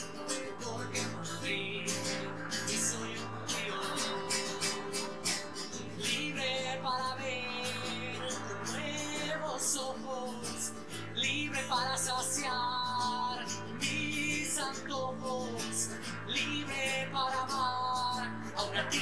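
Music with strummed acoustic guitar.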